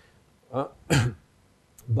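A man clearing his throat in two short bursts about half a second apart, the second one louder.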